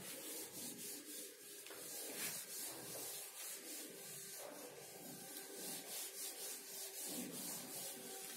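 Duster wiping marker writing off a whiteboard: faint, quick back-and-forth scrubbing strokes.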